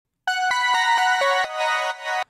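A bright synthesized chime/bell patch in Serum, built from layered wavetables, one an octave up, with distortion, plate reverb and light limiting. It plays a quick melody of about seven notes, roughly four a second, each note starting with a sharp attack.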